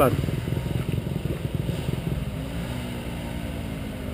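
Off-road motorcycle engine idling steadily, its low, even running slowly fading a little.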